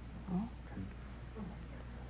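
A short spoken "oh" with a gliding pitch about a quarter second in, then a lull with a few faint voice sounds over a steady low hum.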